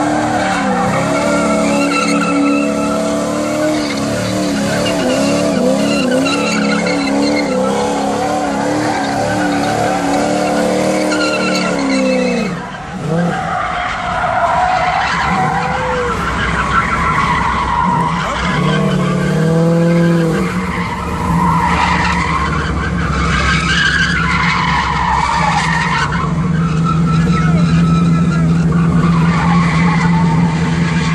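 Cars doing burnouts and donuts: engines held at high revs with a wavering note while the rear tyres spin and squeal. The sound breaks off briefly about twelve seconds in. It then goes on as a noisier mix of tyre squeal and engine, settling into a steadier drone near the end.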